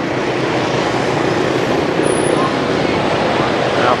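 Dense motorbike and scooter traffic passing close by on a busy city street: a steady rush of engine and tyre noise with no single event standing out.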